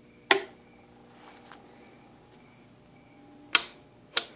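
Two sharp clicks of metal toggle switches being flipped on CB linear amplifier front panels, about three seconds apart, over a faint steady hum.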